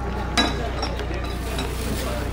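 Indistinct background voices over a steady low hum, with one brief sharp noise about half a second in.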